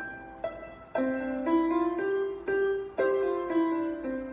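Electronic keyboard played in a piano voice: a slow melody over chords, each note struck and then fading, a new note or chord about every half second to a second.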